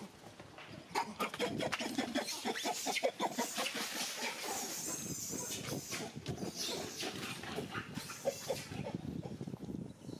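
Baby macaque crying in a long run of short, high-pitched screams and squeals. These are distress calls at being weaned by its mother.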